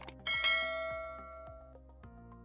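A short click, then a bright sound-effect bell chime for the notification-bell icon, ringing out and fading over about a second and a half.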